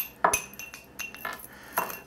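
Stainless mesh tea ball clinking against a glass cup as it is lowered in: several light clinks and knocks with a brief ring after some of them.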